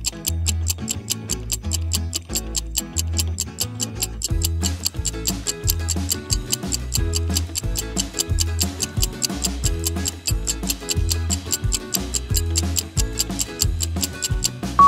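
Quiz countdown timer: steady, rapid clock-style ticking over upbeat background music with a repeating bass beat. The music fills out with more melody about four and a half seconds in.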